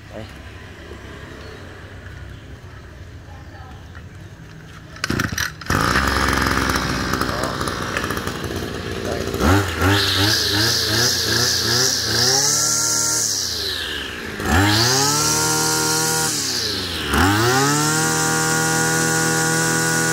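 ECHO 2530 two-stroke brush cutter engine pull-started about five seconds in, idling briefly, then revved up high three times, each rev held for a few seconds before dropping back. It runs strongly.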